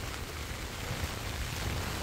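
Heavy rain falling steadily on flooded rice paddies: an even, constant hiss with a low rumble underneath.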